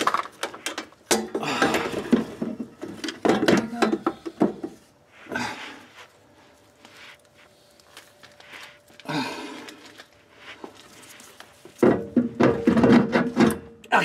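Scattered metal clunks and scrapes as the Ford 8-inch differential's third member is worked up onto the axle-housing studs, mixed with low talk and effort noises.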